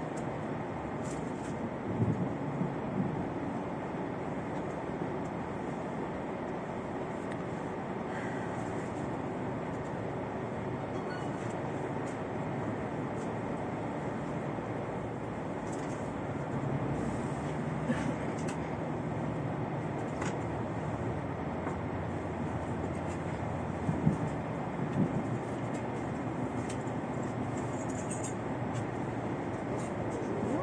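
Steady running noise heard inside an X73500 diesel railcar under way, with a few short, louder knocks about two seconds in, around eighteen seconds and around twenty-four seconds.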